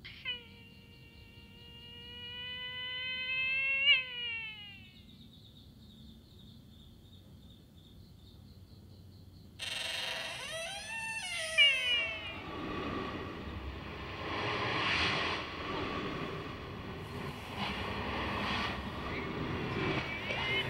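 A strange, drawn-out animal-like wailing cry that rises slightly over about four seconds and then drops off, followed by a faint high steady whine. About ten seconds in, a louder rush of noise sets in suddenly, with wailing cries that bend up and down before it settles into a low rumbling rush.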